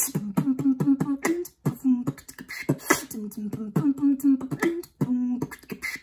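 A woman beatboxing into a close microphone: sharp mouth-percussion hits mixed with short sung "dum" notes that step between two low pitches, in a repeating beat.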